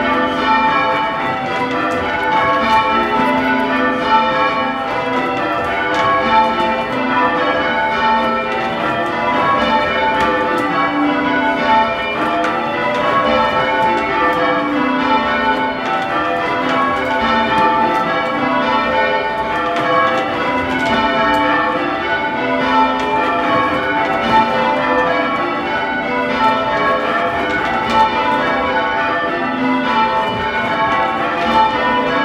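A ring of six church bells, the 1846 C. & G. Mears six with the tenor in A, being rung in changes: a steady, continuous succession of overlapping bell strokes, heard from the ground-floor ringing chamber beneath the bells.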